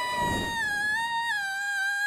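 A cartoon girl's long high-pitched wail, held almost level with a slight drop in pitch halfway. A low rushing whoosh sounds in the first half-second.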